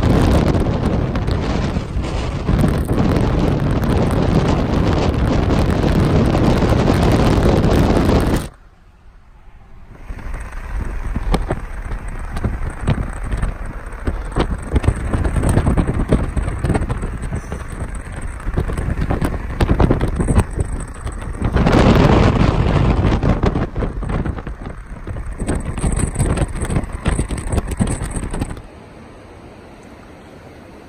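Road and wind noise inside a moving car for the first eight seconds or so. After a cut comes gusty wind buffeting the microphone, strongest a little past twenty seconds. Near the end it gives way to a steadier, quieter rush.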